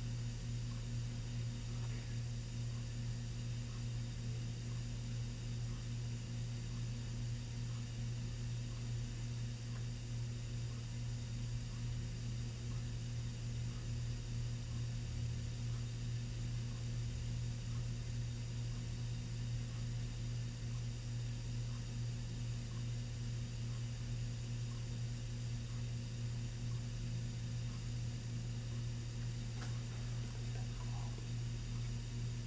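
Steady low hum with a faint hiss, unchanging throughout: room tone.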